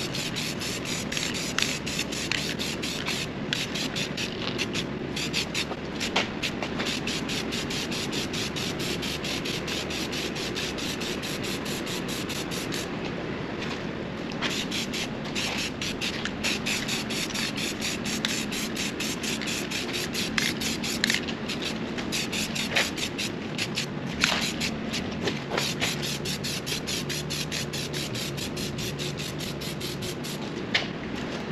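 Aerosol can of Rust-oleum filler primer hissing as it is sprayed onto bare steel in quick sweeping passes, with a few short breaks between passes.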